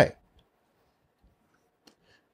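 A man's voice trails off at the very start, then near silence with three faint, isolated clicks spread over the next two seconds.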